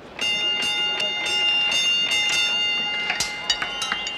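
Several steady high tones sounding together start suddenly just after the start, with sharp clicks about three a second beneath them. The clicks come faster and closer together near the end.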